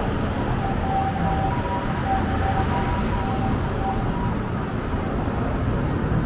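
Street traffic noise: a steady rumble of passing cars and scooters, with faint, broken steady tones in the first few seconds.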